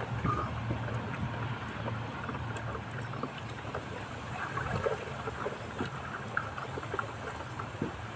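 Sugar and water being stirred in a plastic bucket with a wooden stick: a steady sloshing and swishing of liquid, with occasional light knocks.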